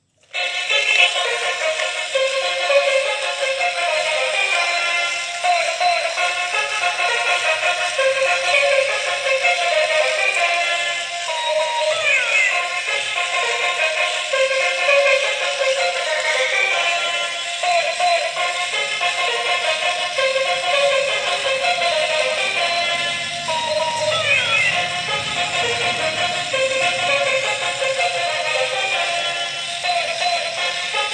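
Thin, tinny synthesized melody with almost no bass, from the small speaker of a battery-operated toy crocodile, with two quick sliding sound effects about twelve and twenty-four seconds in.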